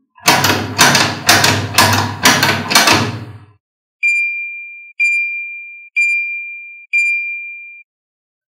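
Electronic sound effects from a toy garage's speaker. First come six rough buzzing pulses about twice a second, then four high, clear dings about a second apart, each fading out, as the garage doors spring open.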